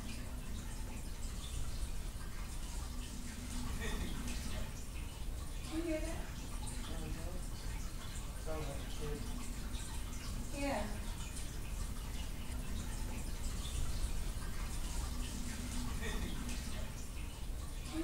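Steady hiss and low hum of a camcorder recording a quiet, empty hallway, with a few faint, brief voice-like sounds scattered through it. The one near the end is taken by the investigators for a disembodied male voice calling "Vickie".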